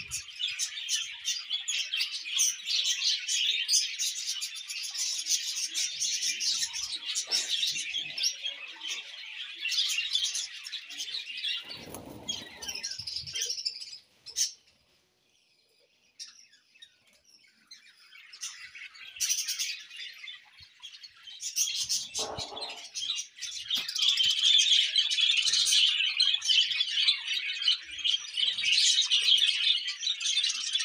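Small birds chirping in a dense, overlapping chorus, breaking off for about three seconds in the middle before resuming louder. Two brief, soft low rustles come in partway through.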